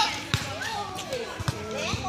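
A volleyball thudding about four times as it is played, with two of the thuds coming close together about halfway through, amid players' high-pitched shouts and calls.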